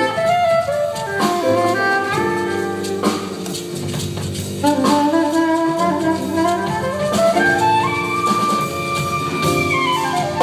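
Live jazz combo playing: a saxophone carries the melody over upright double bass, piano, congas and drum kit. Near the end the saxophone climbs in a quick run to one long held high note.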